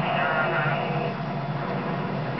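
Television audio from a talent show playing in the room: a wavering, voice-like sound between the show's narration and its music.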